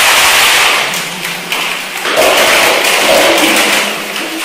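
Plastic crinkling and rustling as it is crumpled and handled, a dense crackle that eases briefly about a second in and then picks up again.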